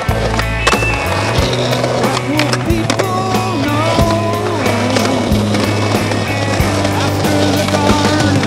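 Music, with a skateboard rolling over concrete under it.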